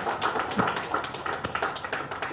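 Applause from a small group: several people clapping irregularly, with quick scattered claps.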